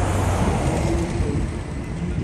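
A red London double-decker bus passing close by, its engine and tyres making a steady low rumble that is loudest in the first second and eases a little toward the end, with street traffic behind it.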